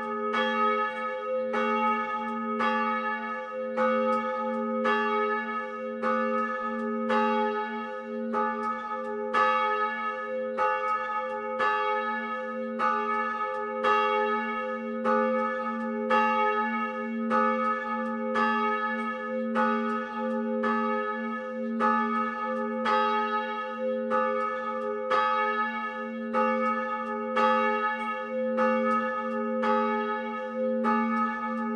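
A 460 kg bronze church bell tuned to a1, cast by Frigyes Seltenhofer in Sopron in 1893, swinging full on its electric-motor drive. Its clapper strikes evenly about once a second, and each strike rings on into the next over a steady deep hum.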